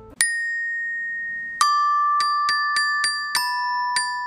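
Glockenspiel: metal bars struck with a mallet. A high note is struck and left to ring, then a lower note, then a run of quick strikes, about four a second, the bright notes ringing on over each other.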